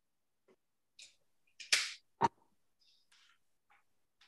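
Brief, faint handling noises and a short hiss, then a single sharp click about two seconds in as a paint bottle is set down on the table.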